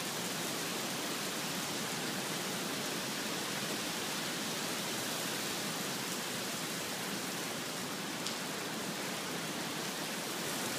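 Rain falling steadily on wet pavement and parked cars, an even, unbroken hiss.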